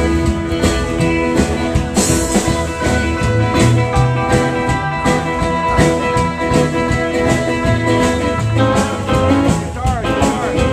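Live rockabilly band playing an instrumental stretch: guitar over a steady driving beat.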